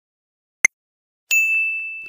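Quiz sound effects: a single sharp countdown tick, then about half a second later a bright ding that rings on and slowly fades, the chime that reveals the answer.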